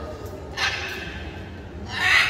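A lull in a large hall, with a low steady hum and one brief, faint voice from the audience about half a second in.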